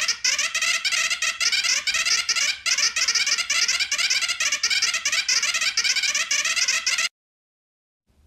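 A cartoon character's gibberish voice: a fast, unbroken run of high-pitched babble syllables standing in for speech, which cuts off suddenly about a second before the end.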